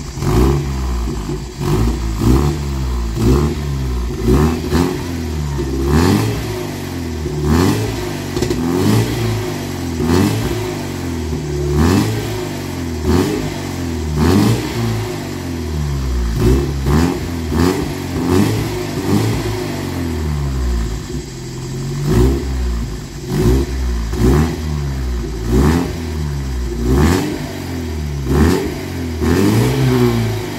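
Alfa Romeo 75 2.0 Twin Spark inline-four revved in repeated throttle blips, about one a second, each rev rising and dropping back, heard through its newly fitted rear exhaust silencer.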